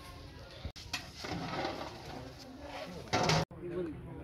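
Background voices and a bird cooing, with a short loud burst just before an abrupt cut about three and a half seconds in.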